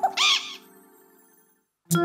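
A cartoon bird-like squawk, a short call that bends up and down in pitch, closes the cartoon's theme tune. Then comes about a second of silence, and soft background music begins near the end.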